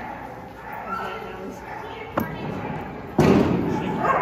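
Agility teeter board banging down onto the arena floor under a running dog, a loud sudden thud about three quarters of the way in that rings on in the big hall. Voices are heard throughout, with a sharp click a little before the bang.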